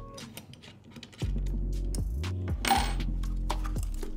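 Small metallic clicks and clinks of a hand tool and screws on the metal rig plates of a Sony FX6 camera, with a short clatter near the end. Background music with a deep bass line comes in about a second in and is the loudest sound.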